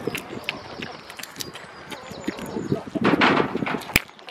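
A goat's muzzle close up at the microphone: small clicks and rubbing noises, with a louder burst of noise about three seconds in and a sharp click near the end.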